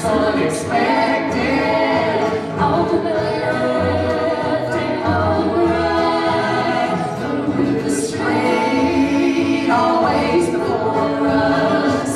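Acoustic gospel band music: several voices singing together in harmony over picked banjo and strummed acoustic guitar, with a cello.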